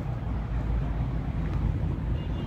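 A steady low rumble with a faint hiss and no voices: the running noise of a turning Ferris wheel gondola.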